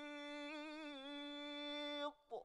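Male Quran reciter's voice holding one long, melodic sung note, steady in pitch with a slight dip about a second in, cutting off abruptly at the end.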